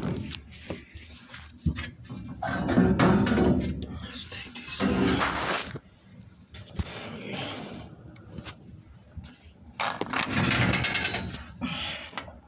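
Indistinct talking in a small room, mixed with short knocks and rustles of a phone being handled close to the microphone.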